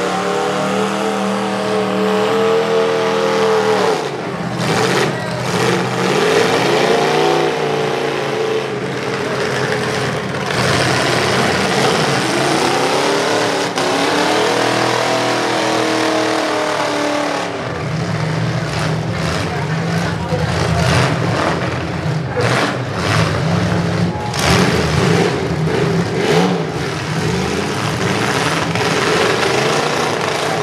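Demolition derby trucks' engines revving hard, their pitch rising and falling in long sweeps, then running steadily as the trucks push against each other. Sharp crashes of metal on metal come from the vehicles ramming, most of them in the second half.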